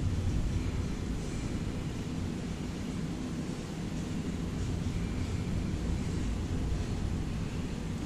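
A steady low rumble of background room noise, with no distinct events.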